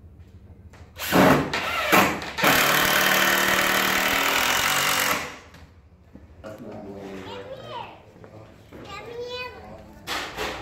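Cordless drill driving a screw through a wall panel into a wooden stud: two short bursts, then a steady run of about three seconds that stops abruptly.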